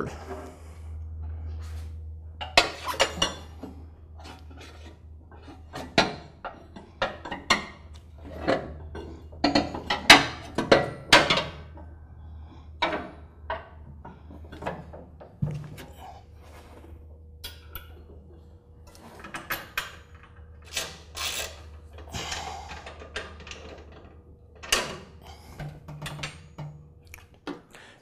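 Hand work on a lawn tractor's mower deck and belt area: scattered metallic clinks, clicks and knocks of parts and hardware being handled and fitted, some in quick clusters, over a steady low hum.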